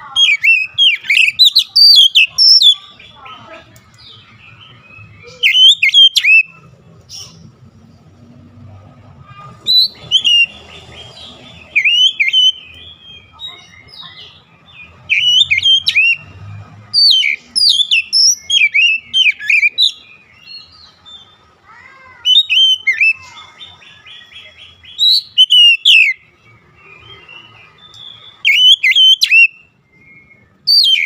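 Oriental magpie-robin singing: loud bursts of rapid, varied whistled notes that slide up and down, each phrase lasting one to three seconds, with short pauses between them.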